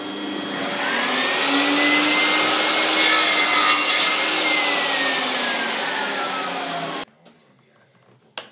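Electric miter saw motor whining up to speed, then its blade cutting through a strip of plywood for about a second midway; after the cut the whine falls steadily as the blade spins down, and the sound stops suddenly near the end.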